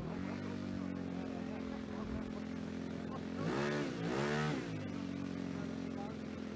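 Model aircraft's ASP 91FS four-stroke glow engine running at a steady idle, revved up and back down twice about three and a half seconds in, then settling back to idle.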